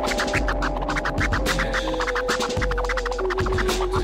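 Hip-hop instrumental with turntable scratching: fast, repeated short strokes over a beat and steady bass. A held note comes in about one and a half seconds in and steps down to a lower note about three seconds in.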